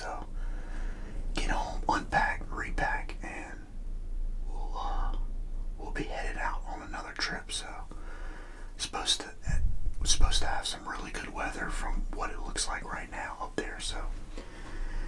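A man whispering close to the microphone, with a brief low rumble about two-thirds of the way in.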